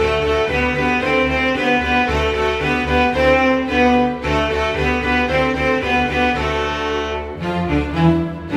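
Cello bowed in a steady beginner melody of short repeated notes, played along with a recorded string-orchestra accompaniment that holds a low bass underneath. The accompaniment's bass changes near the end.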